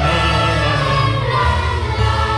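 Choral music: a choir singing held notes over instrumental accompaniment.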